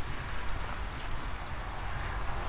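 Damp potting soil crumbling and pattering down as hands pull apart a water chestnut plant's root mass, with a low handling rumble and a few faint ticks about a second in.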